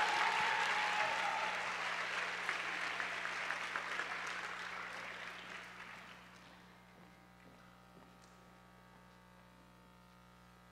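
Audience applauding an award winner's name, loud at first and dying away over about six seconds into quiet room tone.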